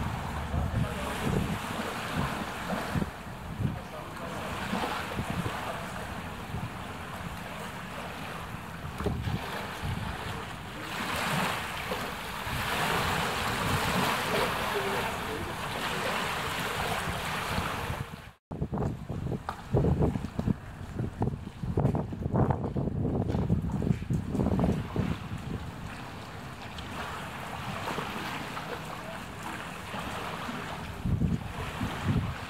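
Storm wind buffeting the microphone in gusts over the wash of floodwater lapping against the street. The sound cuts out for an instant a little past the middle, after which the gusts come stronger.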